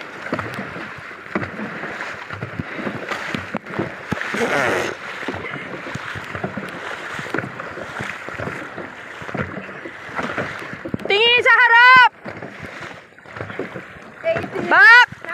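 Dragon boat paddles dipping and splashing through choppy water, with water rushing past the hull and wind on the microphone. About eleven seconds in, a loud, high-pitched, wavering shout rises over the splashing for about a second.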